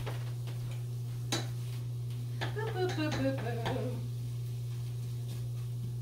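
A pot being stirred with a spoon, with a couple of sharp knocks of the spoon against the pot, over a steady low hum.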